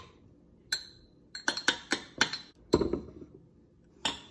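A small metal spoon clinking against a milk frother jug and a glass cup as milk foam is scooped out. There are about eight light, irregular clinks in quick succession, beginning under a second in and including one duller knock near three seconds.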